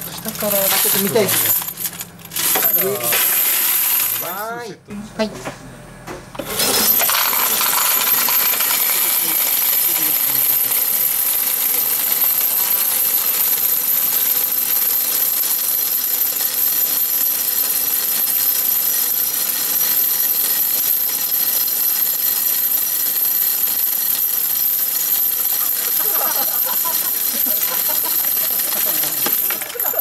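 Medal-dispensing machine paying out a continuous stream of metal arcade game medals down its chute into a plastic cup, a dense unbroken clatter with a steady high tone over it, starting about seven seconds in.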